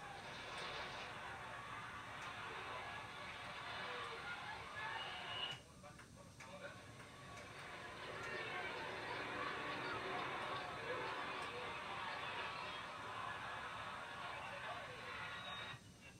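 Faint audio from a TV playing old football game footage: a steady hubbub with indistinct voices, dropping out briefly about five and a half seconds in.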